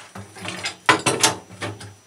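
Irregular metallic clicks and rattles of a wheelbarrow's steel frame brackets and bolts being handled and fitted to the handle, with a sharper knock about a second in.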